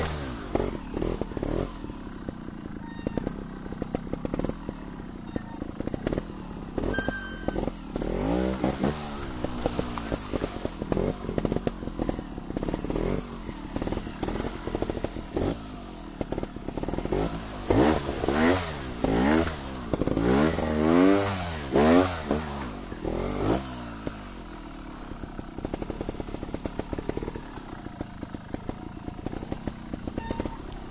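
Scorpa trials motorcycle engine on a slow technical ride, revved up and dropped back in repeated short throttle blips, with a burst of quick blips about two-thirds of the way through that is the loudest part. Knocks and clatter from the bike over rough ground run throughout.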